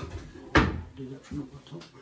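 A cupboard door knocking once, sharply, about half a second in, with a short ring-out in the small laundry room.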